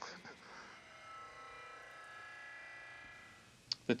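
A faint, steady electric buzz with many evenly spaced overtones. It fades in about a second in and dies away a little after three seconds.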